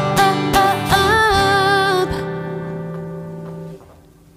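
Closing bars of a song for acoustic guitar and female voice. The guitar strums under a final sung note with vibrato that ends about two seconds in. The last guitar chord then rings on and dies away near the end.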